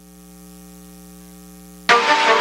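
Steady mains hum from the venue's sound system while no music plays, a low buzz with several even overtones. Music starts abruptly near the end.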